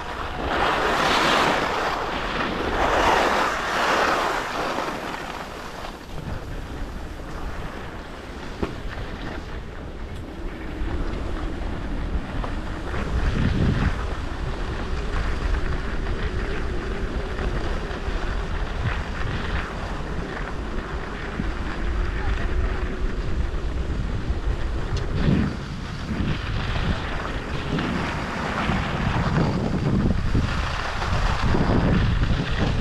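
Wind rushing over the microphone of a skier's action camera during a downhill run, mixed with skis hissing and scraping over groomed snow. The rush surges louder in the first few seconds, then runs on more steadily.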